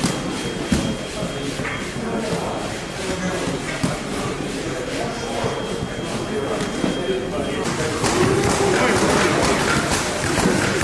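Indistinct chatter of a group of people talking in a large echoing hall, with thuds and shuffling as they handle an inflatable rubber boat; the voices grow louder near the end.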